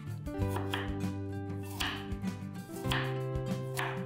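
A chef's knife slicing through a raw carrot onto a wooden cutting board, one crunching cut about every second, over steady background music.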